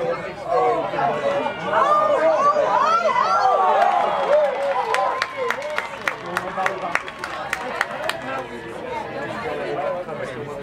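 Many voices of players and spectators talking and calling over one another at a touch rugby match, busiest in the first few seconds. From about five to eight seconds in comes a quick run of sharp, evenly spaced claps, about three a second.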